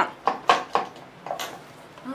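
Knife chopping vegetables on a wooden cutting board: four quick strikes about a quarter-second apart in the first second, then one fainter strike a little later.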